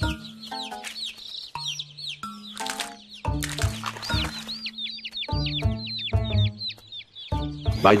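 Cartoon ducklings peeping: a rapid stream of short, high chirps, over music with low held notes.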